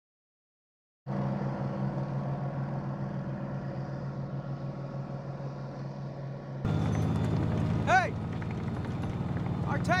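About a second of silence, then the steady drone of a convoy of army trucks and tank engines. About six and a half seconds in it cuts to a louder, closer tank engine rumble, with a man's voice speaking briefly near the end.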